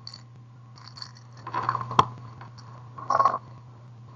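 Small glass seed beads rattling in a clear plastic tub: two short rattles, about one and a half and three seconds in, with a sharp click in the first. A steady low hum runs underneath.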